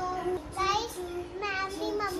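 A child singing a slow melody in long held notes, with two brighter rising notes about half a second and a second and a half in.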